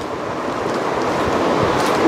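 Cotton nighty fabric rustling and brushing as it is handled and turned over, a dense rustle that swells gradually louder.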